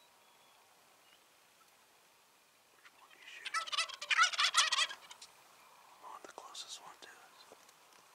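A Merriam's wild turkey gobbler gives one loud, rapid gobble about three seconds in, lasting about two seconds.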